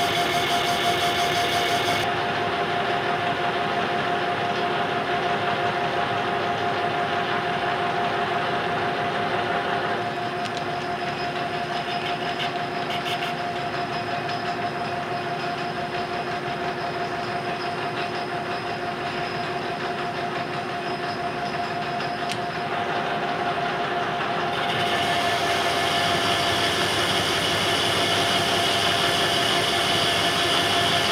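Metal lathe running, its spindle spinning a 4-inch ductile iron bar, with a steady whine from the drive. The higher hiss drops away a couple of seconds in and comes back near the end.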